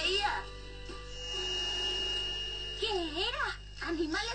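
A cartoon girl's voice over background music, with a thin, steady high note held for about a second and a half in the middle.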